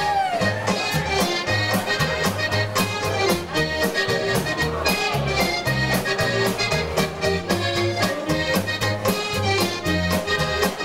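Live Slovenian-style polka band playing a polka, the accordion leading over bass, drums and saxophone, with a steady oom-pah beat.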